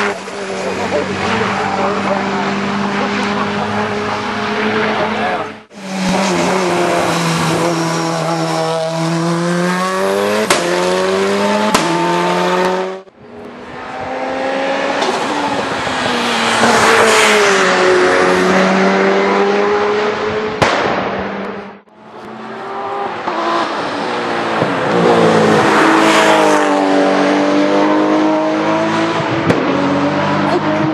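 Hill-climb race car engines revving hard, with pitch rising and falling through gear changes as the cars pass, and a few sharp exhaust backfire bangs when the driver lifts off. The sound breaks off abruptly three times as one run gives way to the next.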